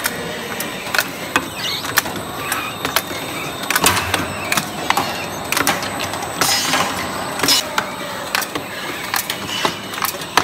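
Automatic linear bottle cap-pressing machine running: a steady mechanical run with frequent irregular clicks and knocks as plastic bottles and caps move along the conveyor and through the pressing belts. A short hiss comes about six and a half seconds in.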